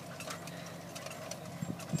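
Tractor engine running steadily at low speed while pulling a mechanical tomato transplanter, with a few faint knocks near the end.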